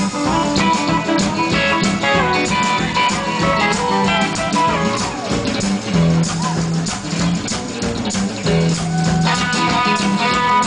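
Rockabilly band playing live without vocals: electric guitar playing over upright bass and a drum kit keeping a steady beat.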